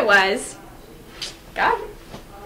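A girl screaming in fright: a loud scream that trails off about half a second in, then a second short shriek near the end.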